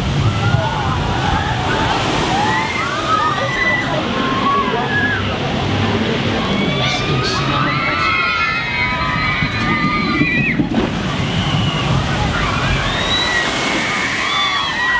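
Heavy water rushing and sloshing from a spillwater ride's boat splashdown and the wave it pushes across the pool, with people's voices and shouts over it. The sound changes abruptly about three-quarters of the way through.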